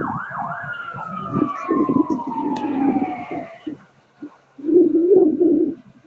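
Emergency vehicle siren: a few quick rising yelps, then one long tone falling in pitch as it winds down over about three seconds, over a low rumble. A separate low wavering sound, about a second long, comes near the end.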